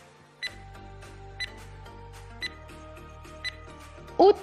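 Countdown-timer sound effect: a short, sharp tick about once a second, four times, over soft background music.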